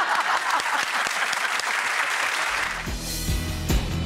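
Studio audience applauding, the applause dying away after about two and a half seconds as music with a bass line and a steady beat comes in.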